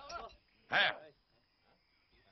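A man's voice: a brief utterance, then one short, loud cry about three-quarters of a second in.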